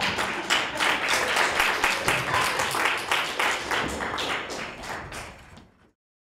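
Audience applauding, a dense patter of many hands clapping that dies away near the end.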